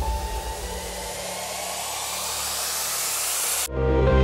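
A noise riser in the background music: a hiss that grows steadily louder and higher, cutting off abruptly near the end as electronic dance music with a heavy beat drops in.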